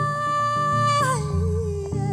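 A woman's voice holding one long, steady wordless note, then sliding down in a wavering run about a second in, over a plucked electric bass line.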